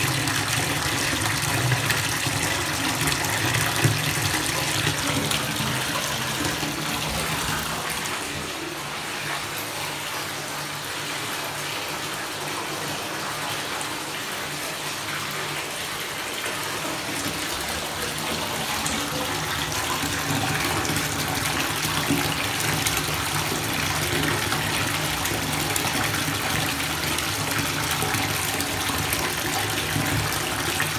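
Bathtub faucet running, water pouring from the spout into a full tub with a steady rushing splash; it turns a little quieter for a stretch in the middle.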